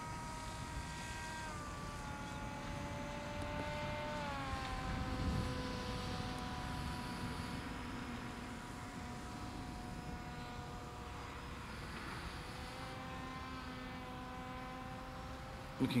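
HobbyKing Super G RC autogyro's electric motor and pusher propeller whining faintly and steadily in flight overhead. The pitch steps down about a second and a half in and again around four seconds in, then rises a little about thirteen seconds in.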